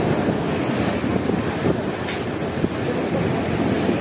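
Small surf waves washing up and foaming over a sand beach, with wind buffeting the microphone.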